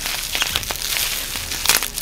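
Plastic bubble wrap crinkling and crackling as it is handled right against the microphone, a dense run of small crackles throughout.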